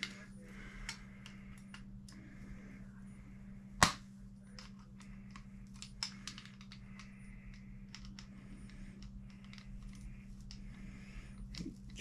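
Light clicks and taps of small plastic and metal RC truck suspension parts being worked into place by hand, with one sharp click about four seconds in. A steady low hum runs underneath.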